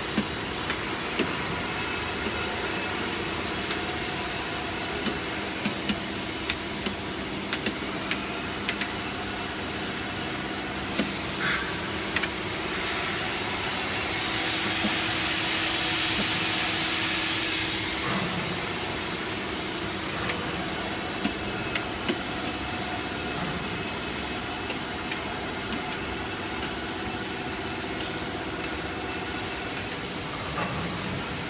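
Double-layer PE stretch film machine running: a steady mechanical drone with a constant hum of several tones and frequent short sharp clicks. A louder hiss rises about halfway through and fades a few seconds later.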